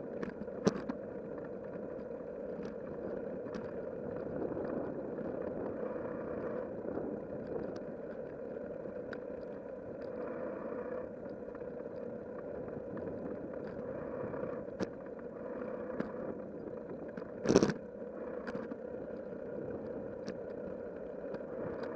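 Bicycle rolling along a paved path: steady tyre and road noise with light clicks and rattles, and one louder knock a little after three-quarters of the way through.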